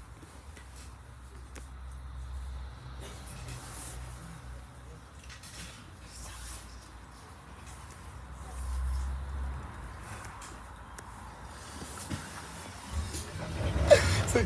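Double-decker bus in motion, heard from the upper deck: a low steady rumble of drive and road noise that swells about nine seconds in, with faint ticks and rattles from the body.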